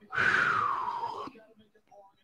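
A man blowing out a long, breathy "whew" that falls in pitch and lasts about a second.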